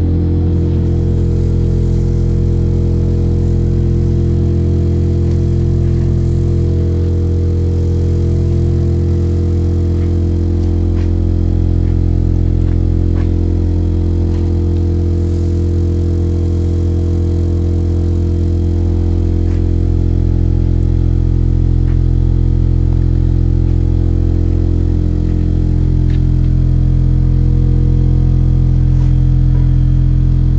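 A piano soundboard panel driven into vibration at its first mode, 43 Hz, gives a loud, steady low hum with a stack of overtones. The hum grows slightly louder near the end as the sand settles into the mode's oval pattern.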